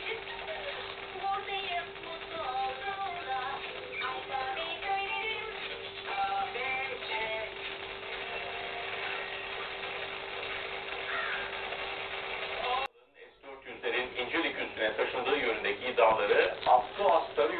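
Children's cartoon soundtrack, music with singing, played through a TV speaker from a weak analog broadcast, with a steady hum tone and a hiss beneath it. About three-quarters of the way through the sound cuts out abruptly for half a second as the channel changes, and a man's speech from a news broadcast follows.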